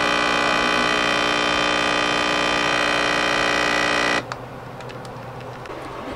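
Nespresso capsule coffee machine's pump buzzing steadily while it brews an espresso into a cup, then cutting off about four seconds in.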